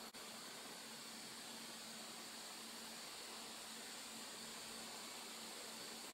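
Faint steady hiss of room tone and microphone noise, with no distinct sound in it.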